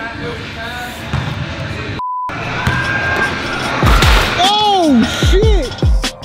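Excited shouting in a large hall, cut off about two seconds in by a short censor bleep, a single steady beep with the other sound muted. In the second half, edited sound effects take over: pitch sweeps that arch up and fall into deep bass hits, leading into music.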